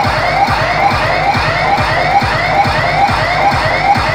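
Siren sound effect: a quick rising whoop repeated about twice a second over a fast, even low beat, loud and steady.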